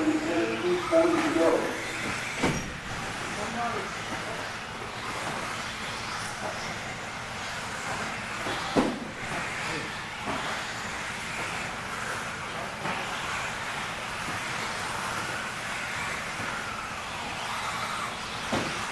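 1/10-scale 2WD electric RC buggies with 17.5-turn brushless motors racing on a dirt track: a steady whine and hiss that swells and fades as the cars pass. Two sharp knocks stand out, about two and a half seconds in and near nine seconds.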